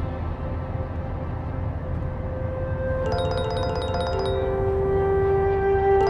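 A mobile phone ringing with a quick, repeating chiming ringtone that starts about halfway in, over sustained musical tones and a steady low car-cabin rumble.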